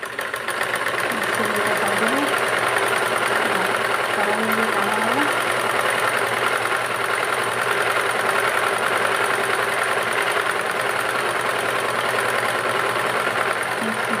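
Domestic sewing machine running steadily at speed, stitching with a fast, even rattle; it starts about half a second in.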